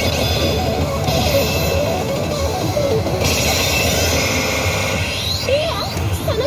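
Loud music from a Highschool of the Dead pachislot machine's speakers, playing on through its ART feature.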